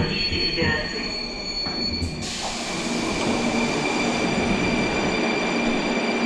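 Rusich metro train running, heard from inside the passenger car: a steady rolling noise with a high whine. About two seconds in, the noise turns brighter and a different steady whine takes over.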